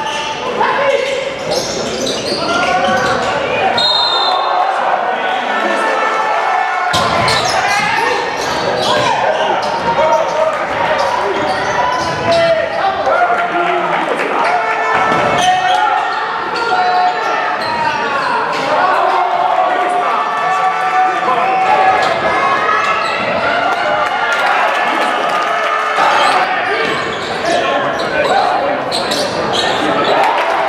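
Live basketball game audio in a large gym: the ball bouncing on the hardwood court and players' and spectators' voices echoing through the hall.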